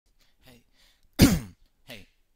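A man clears his throat once, loudly and briefly, about a second in.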